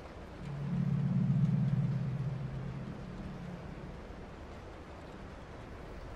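A low, dark ambient drone swells in about half a second in, then fades out over the next few seconds, leaving a faint hiss.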